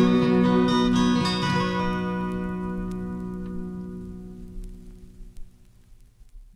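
An acoustic guitar's closing chord ringing out and slowly dying away to near silence, with a few faint record surface clicks as it fades.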